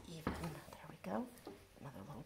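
Quiet, half-whispered speech, with one soft knock about a quarter second in as the wooden heddle of a rigid heddle loom is moved.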